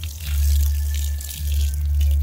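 Water from a garden hose splashing steadily onto bare soil and pouring into an ant hole, with a steady low rumble underneath.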